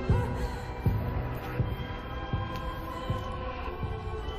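Tense film score: a slow, even heartbeat-like pulse of low thuds, about one every three-quarters of a second, under sustained held tones.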